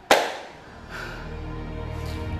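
A single sharp bang about a tenth of a second in, dying away within half a second. Background music follows.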